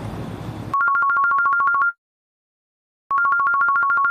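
Electronic telephone ring: a fast trill warbling between two pitches, rung twice for about a second each, with dead silence between the rings. It is an edited-in sound effect, not a phone in the scene.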